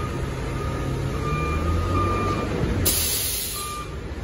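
Heil Half/Pack Freedom front-loader garbage truck's diesel engine running and rising briefly in revs, with a high beeping alarm sounding on and off. Near the end there is a sudden hiss of air from its air brakes that lasts about a second.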